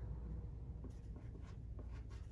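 Soft pastel stick scratching across pastel paper in a few short, faint strokes.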